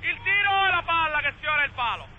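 A male football commentator speaking in Italian over a low steady background rumble.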